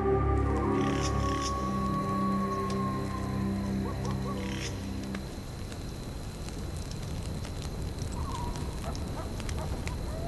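A music drone of several held tones fades out about halfway through. Then a wood fire crackles with scattered small pops, over a faint steady high tone and a few brief animal calls.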